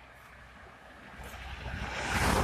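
An SUV approaching along the road: its tyre and engine noise is faint at first and grows steadily louder through the second half as it comes close.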